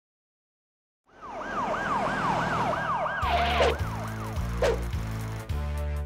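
After about a second of silence, a siren wails, rising and falling about twice a second. A little after three seconds in, the intro music comes in with a steady stepped bass line and two falling swoops, and the siren fades out under it.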